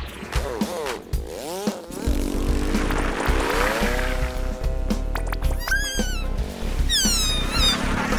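Cartoon background music with sound effects: two quick up-and-down swoops in the first couple of seconds, then a steady low drone with a rising glide near the middle, and a run of falling whistles near the end.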